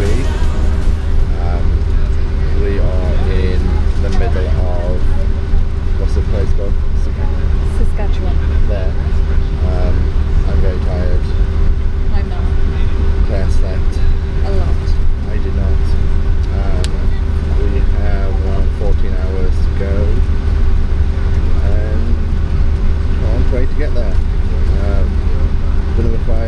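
Loud, steady low drone of a coach bus cabin while the bus runs, with a constant hum over it. Indistinct voices come and go faintly in the background.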